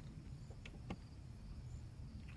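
Quiet background with a low steady hum and two faint light clicks, a little over half a second and about a second in.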